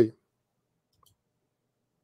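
The last word of a man's speech cutting off, then near silence broken by a single faint click about a second in.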